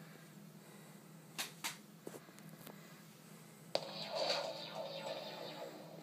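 Two quick mouse clicks, then about two seconds before the end the sound of a streamed online video starts suddenly through the TV's speakers, heard faintly across the room.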